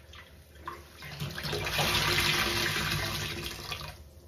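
A large kitchen sponge squeezed and wrung in a sink of soapy water: a few soft squelches, then water streams out of it and splashes into the sink for about three seconds, stopping just before the end.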